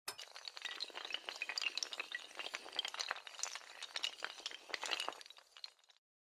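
Rapid clattering of many small dominoes toppling one after another in a chain, a dense run of sharp clicks that thins out and fades near the end.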